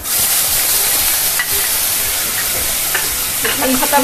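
Tomato purée and garlic paste dropped into hot mustard oil and spices in a kadhai, sizzling loudly as soon as they hit the oil and then frying steadily, with a few light clicks of the spatula stirring it.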